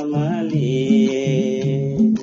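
A man singing a Nepali folk song (lok bhaka) in a moving line that settles into one long, wavering held note. Under the voice, a plucked string instrument plays a repeating two-note figure.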